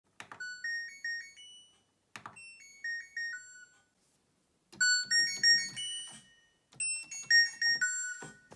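LG ThinQ washing machine's control panel: a button click and a short rising melody of beeps, then another click and a short falling melody. About five seconds in, the tune is played again on a synthesizer keyboard with low bass notes under it, and again near the end.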